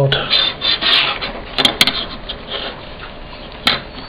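A printed paper sheet rustling as it is handled, with a few sharp clicks as a small circuit board is picked up and moved on the work mat; the loudest click comes near the end.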